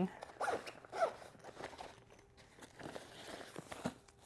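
Zipper on a small fabric gear pouch being pulled in several short, uneven strokes, mixed with the rustle of the nylon bag being handled.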